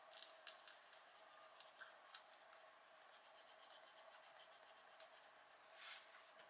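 Faint scratching of an Arrtx coloured pencil shading on paper in quick, short strokes.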